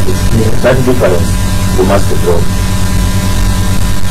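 Loud, steady electrical mains hum and buzz on the studio sound feed, with a few brief stretches of speech in the first half.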